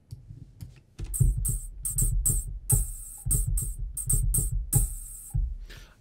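Synthesized hi-hat from the Retrologue 2 subtractive synth: white noise through a high-pass filter with boosted resonance and a flanger, giving a metallic hiss. It is struck in a quick run of short, unevenly spaced hits starting about a second in, with a low thud under each hit.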